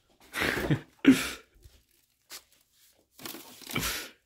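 Wrapped ice cream sandwich packages rustling and crinkling as they are handled and stacked into a freezer, in a few short bursts with a sharper knock about a second in.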